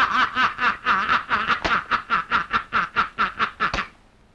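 A man laughing loudly in a rapid, even run of "ha-ha" bursts, about six a second. The laugh stops abruptly near the end.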